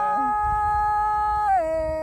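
A woman singing one long held note of Northwest Vietnamese Tai folk song, the pitch stepping down about one and a half seconds in. A man's lower held note ends just as hers carries on.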